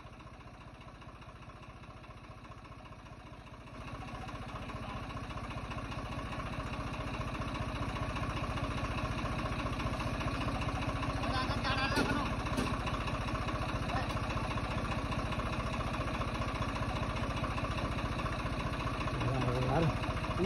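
Swaraj 855 tractor's three-cylinder diesel engine running with an even exhaust beat. About four seconds in it gets louder and keeps building for several seconds, then holds steady under load, pulling a fully loaded paddy trolley.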